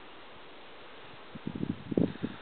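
Steady faint hiss of wind on the microphone on an exposed mountain ridge. About a second and a half in come a few short, low bumps and rumbles of wind gusting on the microphone.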